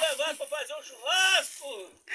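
A child's high-pitched voice calling out: a quick run of syllables, then one longer rising-and-falling call.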